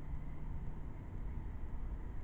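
Steady low background rumble with no distinct event, a faint hum in the first second.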